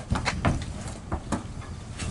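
Horses shifting their hooves inside a two-horse trailer: a quick run of sharp knocks and thuds on the trailer floor, then a couple more about a second later, over a low rumble.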